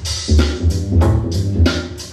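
Hip-hop beat played by the DJ over a sound system, with a deep bass line and regular drum hits.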